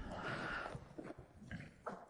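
A man's soft breath in a pause between phrases, followed by a few faint clicks.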